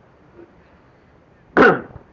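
Pause with quiet recording hiss, then about one and a half seconds in a man gives one short, loud vocal sound that falls in pitch, a throat-clear or grunt between phrases of his preaching.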